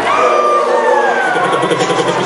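Siren-like sliding tones in the DJ's mix during a beat transition, with the bass cut out; the low end comes back just after.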